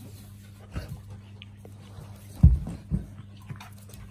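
A chow chow and a St Bernard fighting: short, low growling and scuffling bursts about a second in, then a louder one about two and a half seconds in and another just before three seconds, over a steady low hum.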